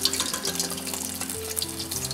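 Battered strips of pheasant breast deep-frying in a pot of oil at about 180 °C, a steady crackling sizzle. Soft background music with held notes plays over it.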